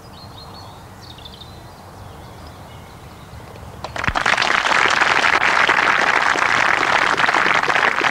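Faint birdsong over a quiet pause, then about four seconds in a golf gallery bursts into sustained applause and keeps clapping: the crowd greeting a short putt holed.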